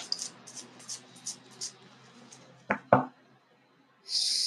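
A deck of fortune-telling cards being handled: a quick run of light snapping clicks, then two sharper taps on the table a little under three seconds in.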